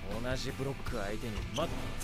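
Japanese anime dialogue spoken over background music.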